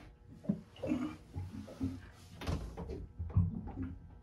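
Scattered knocks and bumps with rustling, like handling and shifting about in a cramped compartment: a brief rustle about a second in and a sharp knock about two and a half seconds in.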